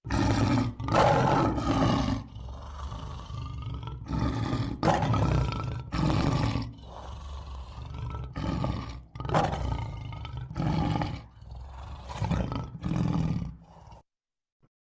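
A lion roaring in a run of about a dozen calls, each under a second long, with short gaps between them and some calls louder than others.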